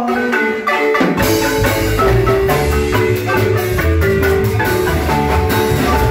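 A large marimba played by several players with mallets, a fast run of struck notes in a band tune. Low bass notes join about a second in.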